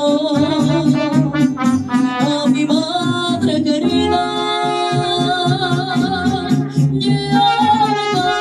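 Live mariachi music: a woman sings into a microphone over small guitars and trumpets, holding one long note with vibrato from about four to seven seconds in.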